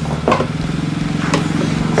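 An engine running steadily at idle, with a couple of short knocks from handling over it.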